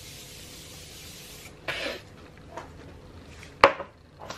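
Makeup setting spray misting from a gold pressurized bottle in one long hiss that stops about a second and a half in. A short soft burst follows, and a single sharp click near the end is the loudest sound.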